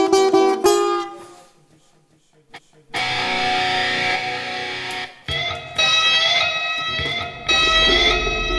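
Free-improvised string duo. A mandolin is plucked in quick repeated notes that ring out and fade to a brief hush. At about three seconds an electric guitar enters with a dense sustained sound; from about five seconds it plays sustained notes that bend upward and are struck again every second or two.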